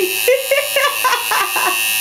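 Electric tattoo machine buzzing steadily on the skin, cutting off suddenly near the end, with a woman laughing in short bursts over it.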